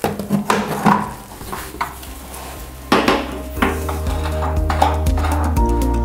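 Light metallic clicks and taps of a stainless steel linear shower drain cover being handled and set on its height-adjusting screws. Background music with a steady beat starts about three and a half seconds in.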